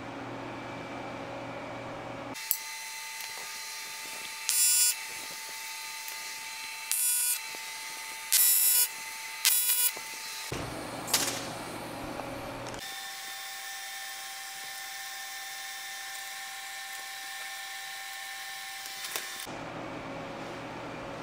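AC TIG welding arc on aluminum, struck in four short bursts of about half a second each to tack a thin plate in place, each with a high buzz. A steady faint hum from the welding machine runs between the tacks.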